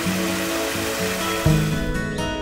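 Background music with a steady melody plays over the splashing rush of a small garden waterfall pouring into a pond. A deep bass note comes in about three-quarters of the way through.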